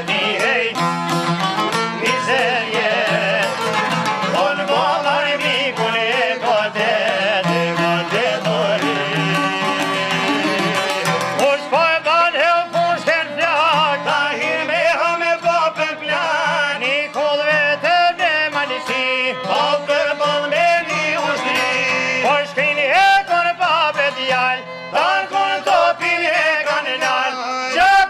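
Albanian folk music played live on violin, çifteli and long-necked lutes: a bowed melody over plucked string accompaniment, with the melodic line growing more prominent about halfway through.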